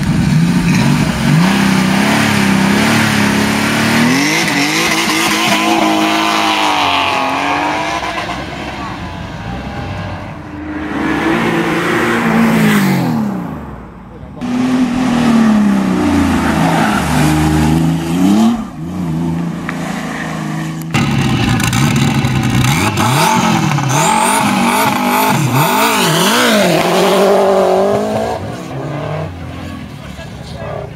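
Classic competition cars driven hard up a hill climb one after another, engines revving high and dropping with each gear change and corner. The sound cuts abruptly twice as one car gives way to the next.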